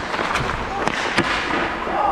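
Ice hockey practice on the rink: skate blades scraping on the ice and a few sharp cracks of sticks and pucks, echoing in the arena, the loudest a little after a second in.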